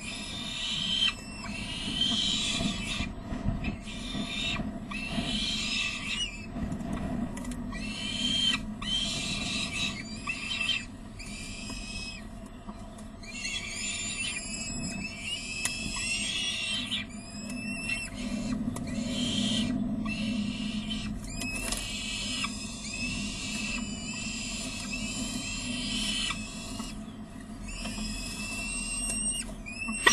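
Peregrine falcon chicks calling over and over in a nest box, begging for food while an adult feeds them. The calls come every second or so. In the middle and near the end some carry thin, curving whistled notes.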